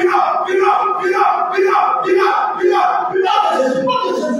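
A group of voices chanting a short cry over and over in unison, about two a second, as a rhythmic prayer chant. The chant breaks off near the end.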